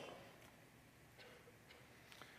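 Near silence: faint room tone in a pause between sentences, with a couple of faint ticks in the middle.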